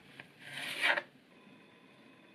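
A kitchen knife slicing through a peeled onion on a plastic cutting board: one rasping cut about half a second long, starting about half a second in.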